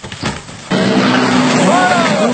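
Rally car going off the road in a dust cloud: a rough noise of engine and gravel. Just under a second in, the sound jumps louder to spectators shouting excitedly over a steady engine note.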